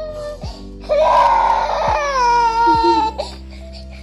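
A toddler's cry: one wail of about two seconds, starting about a second in and sliding down in pitch, over background music with a steady beat.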